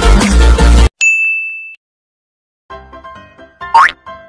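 Electronic dance music cuts off abruptly, and a single bell-like ding sound effect rings and fades. After a moment of dead silence, light plinking music starts, and a quick rising whistle-like sound effect comes near the end.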